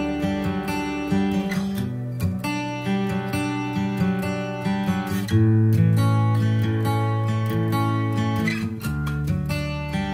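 Background music: strummed acoustic guitar chords, a little louder from about halfway through.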